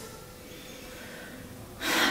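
A woman's quick intake of breath near the end, after a quiet pause with faint room hum.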